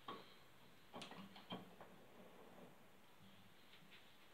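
Near silence with a few faint clicks of the Rek-O-Kut M-12 overhead crank mechanism being handled, the clearest about a second in.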